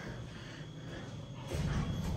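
Quiet, low rumble of an elevator car, turning louder about one and a half seconds in.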